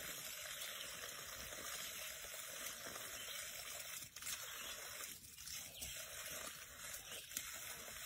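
Thin stream of water trickling steadily over the rim of a plastic stock tank and spilling onto the ground.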